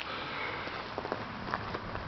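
Footsteps crunching on a gravel yard, a faint, irregular crackle while walking with a handheld camera.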